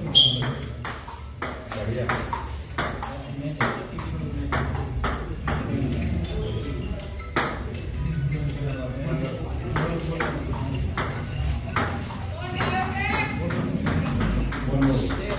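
Table tennis ball clicking sharply off the rubber-faced paddles and bouncing on the table during rallies, a quick irregular string of clicks, under the low murmur of onlookers' voices.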